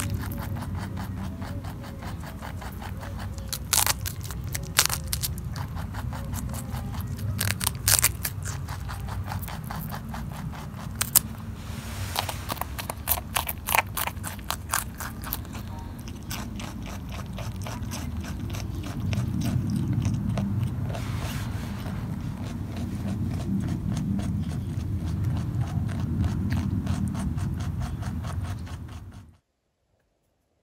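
Lop-eared pet rabbit chewing a stalk of celery: rapid, crisp crunching clicks with a few louder crunches as it bites, over a low steady rumble. The sound cuts off suddenly near the end.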